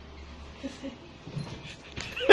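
A dog giving a few short, faint whimpers.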